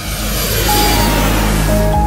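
Outro music of held synth chords over a deep bass, with an airplane fly-by sound effect: a noise that swells and then fades away over the music.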